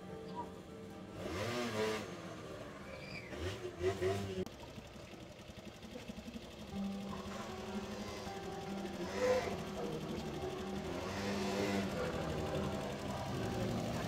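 Small motor scooter engine running as the scooter rides off and later comes back, growing louder as it approaches in the second half, with background music.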